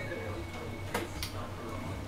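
Room tone in a pause between words: a steady low hum with two faint ticks about a second in.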